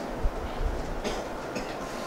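A pause in speech filled by room noise with a low rumble and a soft bump about a quarter second in.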